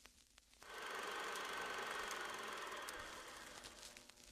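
Film projector sound effect: a steady rattling clatter with scattered clicks, starting just under a second in and easing off near the end.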